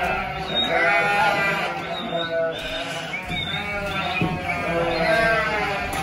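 Lambs bleating, many calls overlapping one after another, over a steady low hum.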